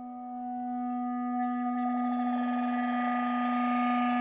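Clarinet holding one long low note that swells steadily louder, its tone taking on a wavering edge about two seconds in.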